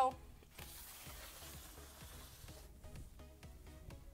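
A soft, even hiss lasting about two seconds, followed by light background music with a regular ticking beat.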